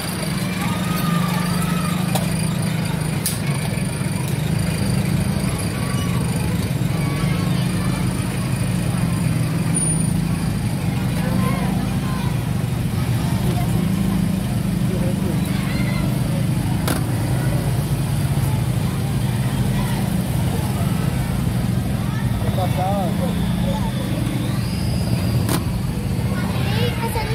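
A steady low engine hum, with children's voices chattering over it.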